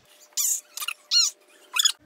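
Four short, high-pitched squeaks, each arching in pitch, with a faint steady tone beneath.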